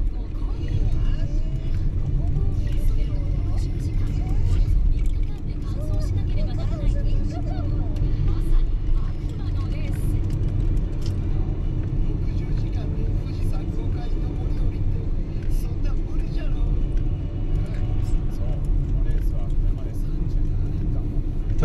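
A car's cabin while driving: a steady low rumble of road and engine noise, with faint talk underneath.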